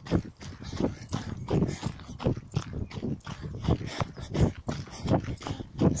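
A runner's footfalls and breathing in a steady rhythm of about three strides a second, picked up by a phone held in the running hand.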